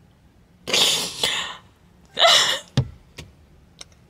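A woman's sobbing: two breathy, gasping sobs about a second apart, put-on crying rather than real, followed by a short click.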